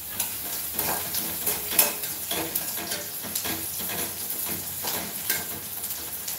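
Food sizzling in a pan on the stove while a spatula stirs it, with repeated short scrapes and taps against the pan.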